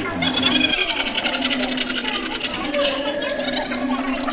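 Dense, rapid clinking and clattering of many small hard objects, over a steady low tone.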